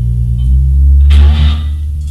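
Loud, noisy no-wave rock music: a heavy, steady low bass drone with a crashing burst of noise about a second in.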